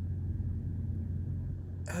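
Steady low hum of an idling vehicle engine, with no other events.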